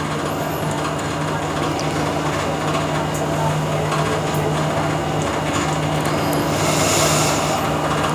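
Steady low hum with a background hiss of room noise, no voice.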